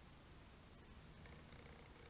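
Near silence: a faint, even low background rumble, with a faint thin tone from about a second in.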